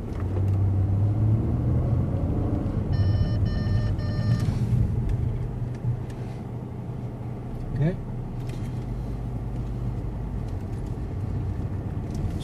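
Car engine and road noise heard from inside the cabin as the car drives at speed. About three seconds in comes a quick run of about four electronic warning beeps, the vehicle-to-vehicle system's alert that a crossing car is about to run into its path.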